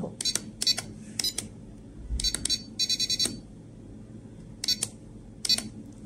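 Short electronic key beeps from a RadioLink RC6GS V3 transmitter, each confirming a press of its menu buttons as the EPA switch setting is stepped through. There are about a dozen single beeps spread through the clip, with a quicker run of beeps about three seconds in.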